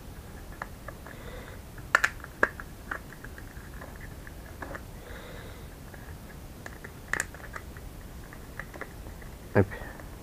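Handling noises: scattered light clicks and taps, the sharpest about two seconds in and again about seven seconds in, over a faint steady room hiss.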